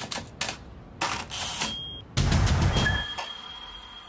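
Sound effects for an animated TV logo: a quick run of sharp clicks, then heavier hits that each trail off in a noisy tail, with a thin high tone held through the second half.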